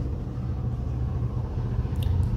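Steady low rumble, with a single sharp click near the end.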